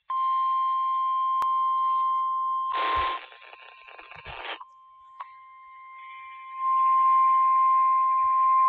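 NOAA Weather Radio 1,050 Hz warning alarm tone: a steady, single-pitch beep, signalling that a warning message is about to follow. Heard through radio reception, it is crossed about three seconds in by a brief burst of static, drops faint for a few seconds, and comes back at full strength about two-thirds of the way through.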